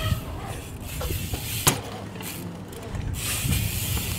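Mountain bike tyres rolling on a concrete skatepark with a rough low rumble, and a sharp clack about one and a half seconds in.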